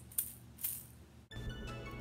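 An egg shaker rattled in a couple of quick shakes, then about a second in it cuts off and instrumental intro music starts.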